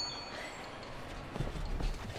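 The tail of a music sting dies away, then a few soft footsteps, about three steps in the second half.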